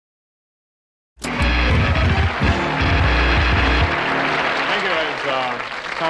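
Music with a heavy bass starts abruptly about a second in, after dead silence. A man's voice comes in over it in the last couple of seconds.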